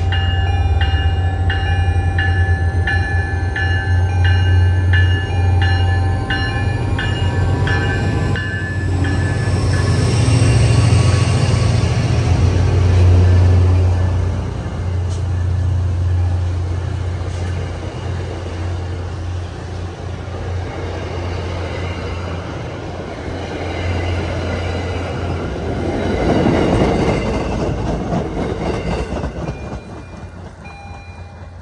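Diesel commuter-rail locomotive passing close by, its engine rumbling low, with a bell ringing in even strokes for the first several seconds. The passenger coaches then roll by with steady wheel and rail noise, swelling once more shortly before the end and then fading.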